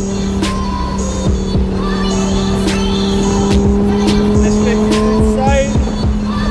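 Music with a steady beat over the V10 engine of a Lamborghini Huracán Performante heard from inside the cabin, its pitch rising slowly as the car gathers speed.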